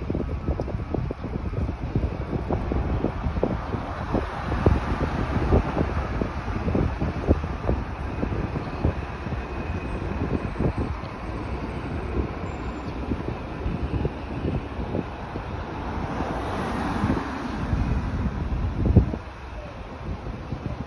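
City street traffic with wind buffeting the phone's microphone in frequent low gusts. The traffic swells louder near the end, then drops away suddenly.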